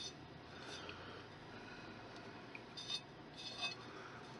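Faint rustling of loose fern moss as fingers spread and press it onto a fired-clay garden dish: a few soft, brief rustles over low room hiss.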